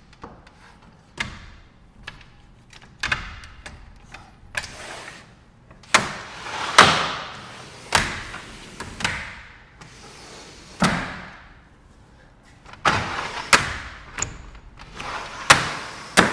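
Vinyl glazed panels of a PGT Eze-Breeze four-track porch window being fitted into and slid up and down their aluminum frame tracks: a run of clicks, knocks and short sliding rattles, with several sharp clacks as the panels stop.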